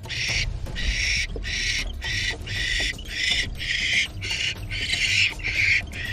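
Barn owls in a wooden nest box giving a rapid series of short raspy hisses, about two a second, with no tone in them.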